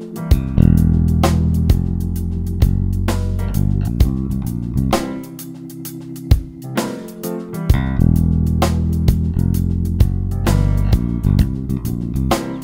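Fender Jazz Bass electric bass playing a groove over a C7 dominant chord that deliberately steers away from the root note, a phrase repeated about every four seconds. A drum backing track keeps a steady beat under it.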